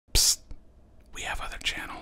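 A voice whispering: a brief sharp hiss near the start, then a whispered word or two from about a second in.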